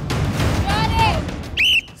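Men shouting encouragement over a noisy crowd of onlookers, then a short, sharp referee's whistle blast near the end that signals the bout to stop.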